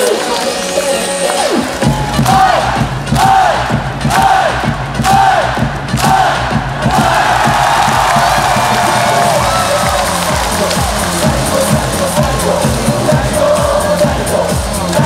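Large stadium crowd of baseball fans chanting in unison and then singing a cheer song along with loud amplified music. A pounding beat comes in about two seconds in, and short rhythmic shouted calls repeat for a few seconds before the crowd carries on singing over the music.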